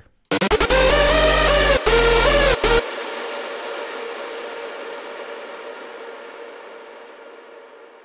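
A layered electronic synth lead with bass plays a short melody phrase for about two and a half seconds, then stops. It leaves a long reverb tail that keeps going and slowly fades out, sustained by a compressor placed on the reverb send.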